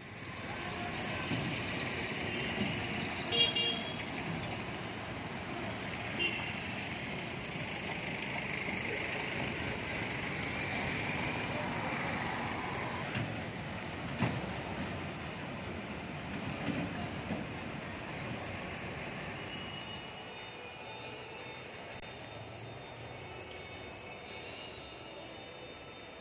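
Traffic on a city road: a truck and auto-rickshaws passing, with steady engine and road noise and a short horn toot about three seconds in. The sound grows quieter in the last few seconds.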